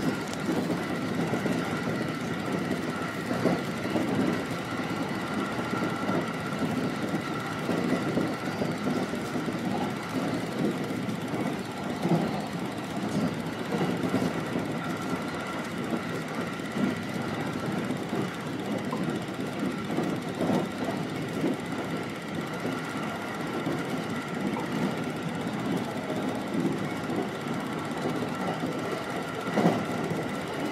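JR Utsunomiya Line electric train running along the track: a steady rumble of wheels on rails with a constant patter of small clicks, under a steady high whine.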